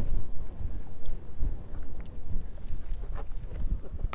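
Wind buffeting the microphone: a steady, uneven low rumble.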